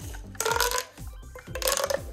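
Plastic pop tube stretched twice, each pull giving a short burst of rapid crackling pops as its ridges snap out, over background music with a steady beat.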